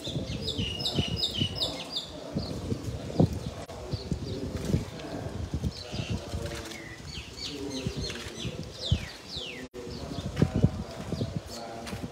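Small birds chirping in quick runs of short falling notes near the start and again past the middle, over soft knocks, shuffling and low voices of people standing close by.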